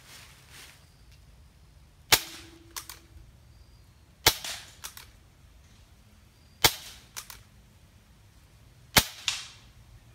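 Four shots from a .22 Benjamin Marauder P-Rod PCP air pistol, spaced about two seconds apart. Each sharp crack is followed about half a second later by one or two smaller clicks.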